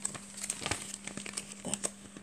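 Laminated plastic sheet crinkling as it is handled and moved, a run of small irregular crackles.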